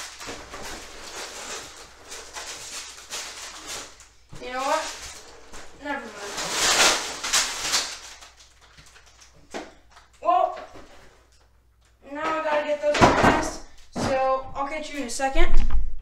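Cardboard box flaps and plastic parts bags rustling and knocking as a large LEGO set box is opened and emptied. A voice speaks briefly a few times, mostly in the second half.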